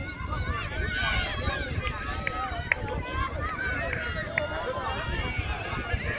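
Several people talking at once, indistinct, over a steady low rumble.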